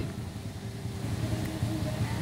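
Quiet background during a pause: a low, steady rumble with no distinct event.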